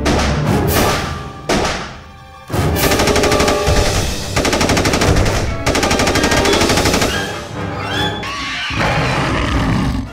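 Rapid automatic gunfire in long bursts, a film sound effect mixed over music. The firing starts about two and a half seconds in, breaks off briefly twice, and stops a couple of seconds before the end, leaving the music.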